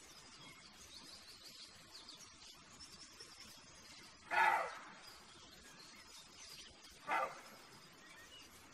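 Roe deer buck barking twice: a short, harsh bark about four seconds in and a shorter one about three seconds later.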